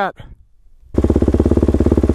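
Single dirt bike engine running steadily close to the microphone, starting abruptly about a second in after a moment of quiet.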